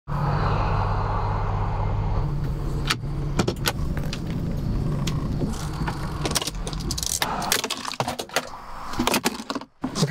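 Keys clicking and jangling in the ignition of a 2019 Ford Transit van as the key is turned, over the low hum of the van's idling engine, which dies away about three-quarters of the way through.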